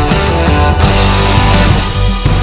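Instrumental rock music: electric guitar over bass, keyboards and a drum kit played along with the record. The cymbals drop out briefly about half a second in.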